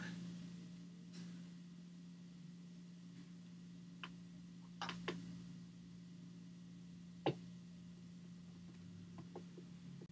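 Quiet room with a steady low hum, and a few light plastic clicks and knocks as the LEGO Boba Fett alarm clock is handled, the sharpest a little after the middle.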